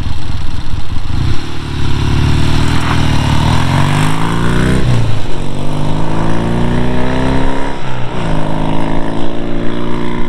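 1971 Triumph Trophy TR6C's 650 cc parallel twin accelerating hard as the bike pulls away. Its pitch rises through the gears with upshifts about five and eight seconds in.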